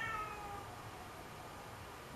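A short high-pitched animal call that falls in pitch and fades out within the first second, followed by faint room noise.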